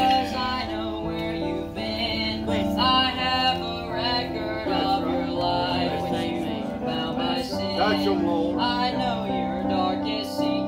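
A group of young voices singing a gospel song in unison with instrumental accompaniment.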